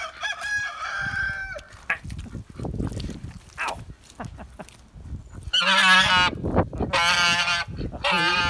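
White domestic goose honking at close range, warning off a person in defence of the ducks it guards. Shorter calls come near the start, then two long, loud, harsh honks in the second half.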